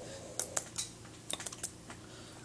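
Hands striking and brushing against each other during fast sign language: a quick, uneven series of about eight sharp light clicks and slaps.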